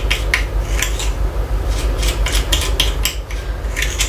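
Small metal spoon stirring and scraping damp granulated sugar in a small glass bowl, working liquid dye into it: a quick, irregular series of gritty scrapes and light clinks against the glass, a few a second, over a steady low hum.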